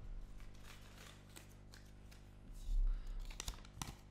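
Faint rustling and crinkling of a folded paper slip being drawn from a cloth Santa hat and unfolded, with a low bump about three seconds in.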